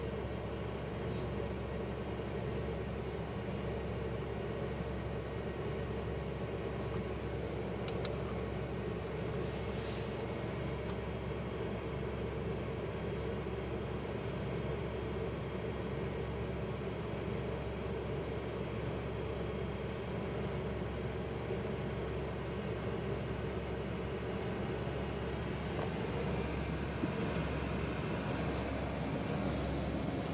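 Steady cockpit noise of a Pilatus PC-24 at ground idle: the running left engine and the cabin air system hum evenly, heard from inside the cockpit. A few faint clicks come about eight and ten seconds in.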